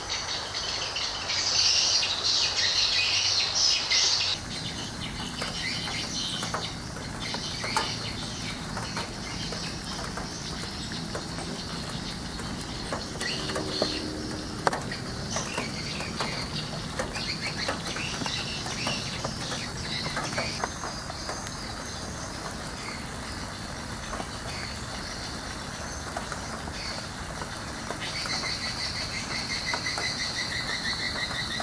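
Outdoor nature sound of insects and birds calling. A loud, high insect chorus fills the first four seconds, then it drops to a quieter mix with scattered clicks and a faster high pulsing near the end.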